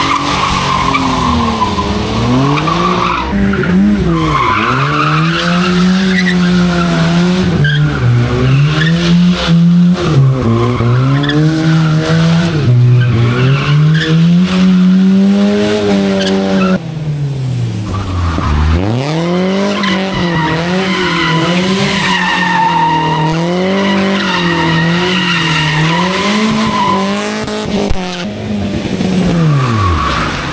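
Rally cars drifting one after another around barrels: each engine revs up and down every second or so, with tyres squealing and skidding. A black BMW M2 is first, and about 17 s in the sound switches to a different car doing the same.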